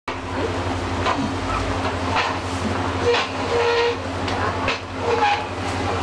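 Food stall ambience: a steady low hum under background chatter, with a scattering of short clicks and knocks from utensils on the counter.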